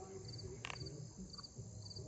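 Faint cricket chirping: short high chirps of a few quick pulses each, repeating about twice a second. A single sharp click comes about two-thirds of a second in.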